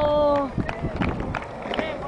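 A long shouted "whoa" from a man ends about half a second in. After it come scattered clicks and knocks from skateboards on concrete and brief shouts and chatter from other skaters.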